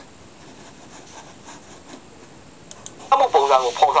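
A faint steady hiss, then about three seconds in a voice starts speaking loudly.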